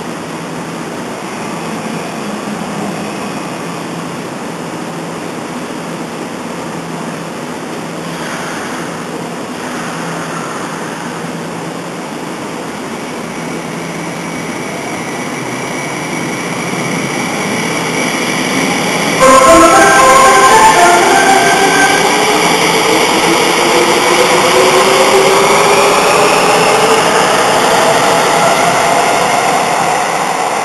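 Tsukuba Express TX-2000 series train pulling out: a steady rumble grows louder, then a short music-horn melody sounds suddenly about two-thirds of the way in. After it, the inverter-driven traction motors' whine rises steadily in pitch as the train accelerates.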